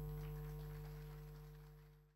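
The last chord of an acoustic guitar ringing on and slowly dying away to silence.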